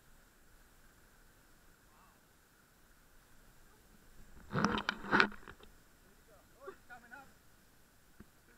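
A person's startled cries: two short, loud shouts about halfway through, then quieter wavering voice sounds, over the faint steady rush of a stream.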